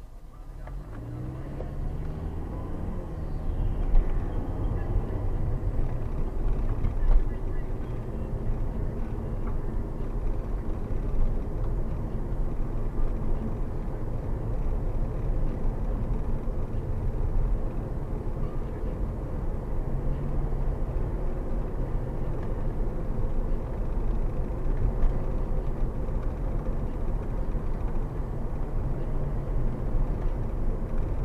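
Car engine and road noise heard from inside the cabin as the car accelerates, the engine note rising over the first few seconds, then a steady driving rumble with a couple of short knocks about four and seven seconds in.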